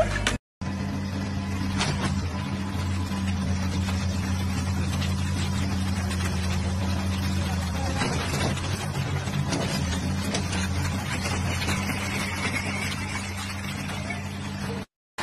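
Excavator's diesel engine running steadily, a low even drone, with a few faint knocks and clatters. The sound drops out briefly about half a second in.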